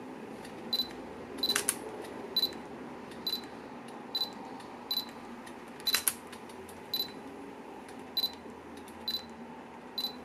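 Canon EOS M5 autofocus-confirmation beeps, a short high beep about once a second as the camera locks focus, with the mechanical shutter firing twice, about 1.5 s in and about 6 s in.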